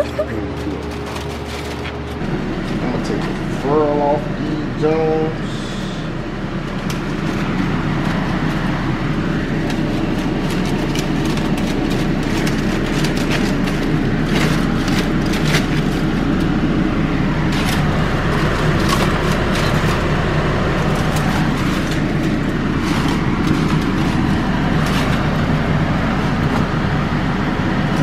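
Aluminium foil crinkling and crackling as it is peeled back off a foil pan of seafood boil, over a steady hum. A voice is heard briefly about four seconds in.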